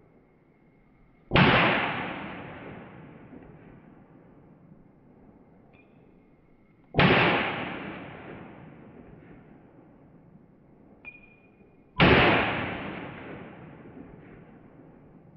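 Zastava M57 pistol, a 7.62×25mm Tokarev, firing three single shots about five seconds apart. Each shot is followed by a long echo that fades over a couple of seconds.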